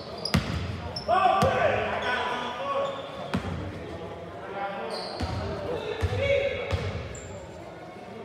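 Basketball bouncing on a hardwood gym floor, a few separate echoing bounces, with players' and spectators' voices calling out and short sneaker squeaks.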